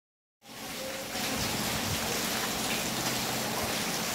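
Steady rain, a continuous even hiss that starts about half a second in and grows slightly louder about a second in.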